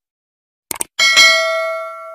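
Subscribe-button sound effect: a quick double mouse click, then about a second in a bell ding that rings with several tones and fades slowly.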